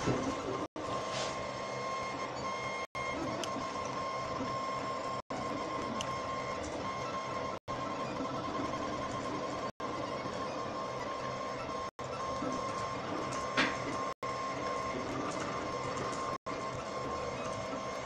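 3D printer's stepper motors driving a diode laser head back and forth as it raster-engraves cardboard: a steady mechanical whine with brief silent gaps about every two seconds.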